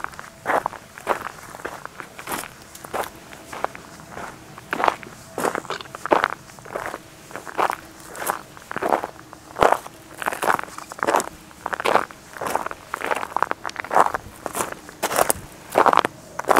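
Footsteps on a dry dirt path with loose stones, walking at an even pace of about two steps a second, each step a short crunch.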